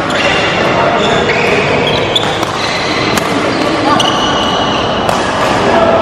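Badminton rackets striking the shuttlecock, several sharp hits, over voices and chatter echoing around a large sports hall.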